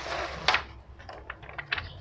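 Cardboard box and plastic wrapping being handled on a table: a rustle, a sharp click about half a second in, then a run of light ticks and clicks.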